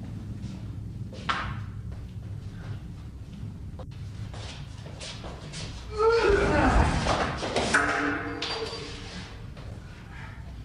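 A staged scuffle: a sharp knock about a second in, then voices crying out with thuds of blows and bodies hitting the floor, loudest from about six to eight seconds in.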